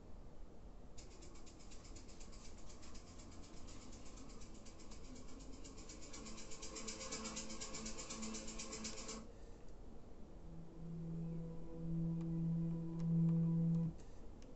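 Clarion DB239 car CD player playing faintly at low volume while its tracks are changed. First a hiss with a rapid pulse, then a few low held tones that grow louder near the end.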